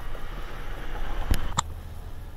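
A pause in a man's talk: steady background noise from the recording room and microphone, with two short clicks a little after the middle.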